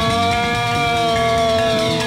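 Late-1960s psychedelic blues-rock recording, with no singing here. One long sustained lead note, held and sinking slightly in pitch, rings over a moving bass line and drums.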